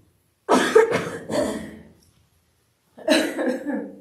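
A man coughing close to a microphone: a quick run of about three coughs starting half a second in, then another short cough about three seconds in.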